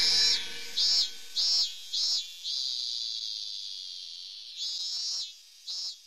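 An insect calling outdoors in short high chirps of about a third of a second, roughly two a second, with one longer drawn-out call in the middle that slowly fades, then a few more short chirps.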